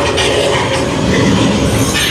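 Loud, steady rumbling and rattling noise from the haunted house's sound effects.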